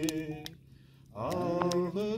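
A man singing a slow, chant-like melody in long held notes over a steady low drone. The singing breaks off about half a second in and comes back a little later on a rising note.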